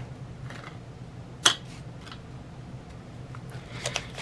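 Paper banknotes being handled and counted by hand, giving a few short crisp flicks and rustles, the loudest about a second and a half in.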